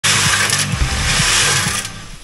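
Loud, steady machine-like hissing noise over a low hum, cutting off just before the end.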